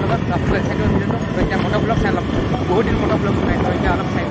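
Steady wind and engine noise from riding a motorbike, with a man talking loudly over it.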